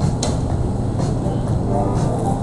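Steady low rumble of restaurant background noise, with faint voices near the end and a single click about a quarter second in.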